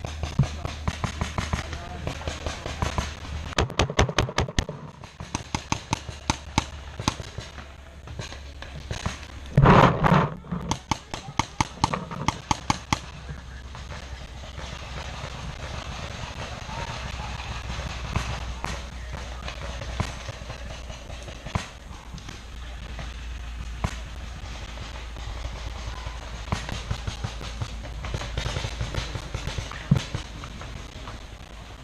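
Paintball markers firing in rapid strings of shots, dense through the first dozen seconds and more scattered later, with one brief loud burst of noise close by about ten seconds in.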